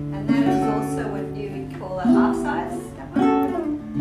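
Half-size Katoh nylon-string classical guitar being strummed: three chords, each left to ring.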